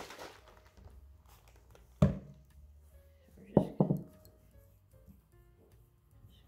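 A plastic spray bottle set down on a tabletop with one sharp thunk about two seconds in, followed by two quick knocks as things are handled beside the cactus pot. Faint background music runs underneath.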